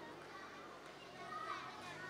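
Faint, overlapping chatter of children's voices as a group mills about and talks.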